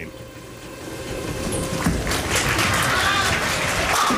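A ten-pin bowling ball set down on the wooden lane with a knock about two seconds in, then rolling with a steady rumble toward the pins and hitting them near the end, over crowd noise in the bowling centre.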